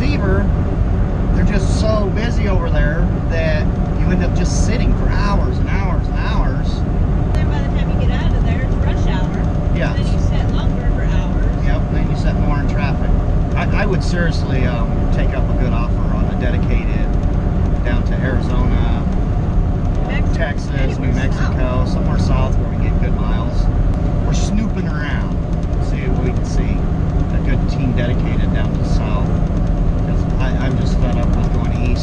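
Cab noise of a Western Star 5700XE semi truck under way: a steady low engine and road rumble with a few steady hum tones. Voices or speech-like sounds come and go over it.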